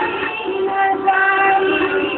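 Music with a singing voice holding long, steady notes.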